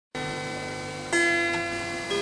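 Electric guitar playing slow, sustained notes that ring on, with a new, louder note struck about a second in.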